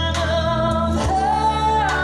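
Live country band with a woman singing: she holds one long note, then steps up to a higher note held for most of a second, over electric guitar, bass and drums.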